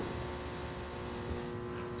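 Faint steady background hum with a few held tones and no other events: room tone.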